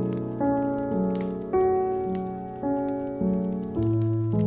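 Slow, gentle solo piano music, a new note or chord struck about every half second and each fading away, with a faint patter of soft clicks beneath it.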